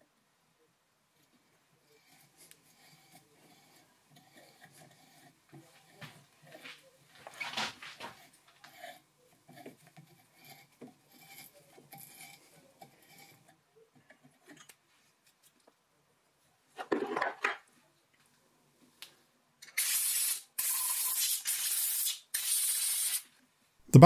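Hand tap turning in a tap wrench through the M8 threaded holes of a steel backplate, faint scraping and clicking as the thread is cleaned up. Near the end, four short hisses of compressed air blowing out the holes.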